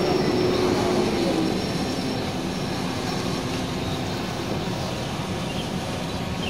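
Quadcopter drone hovering overhead: a steady buzz mixed with outdoor background noise.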